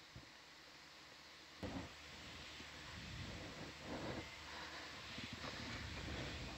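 Faint steady hiss of a quiet control-room audio feed, with a soft knock about one and a half seconds in, followed by faint muffled, indistinct sounds.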